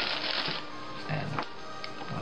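Crinkling of a Ritz cracker box's wrapper as a hand rummages in it for a cracker, stopping about half a second in.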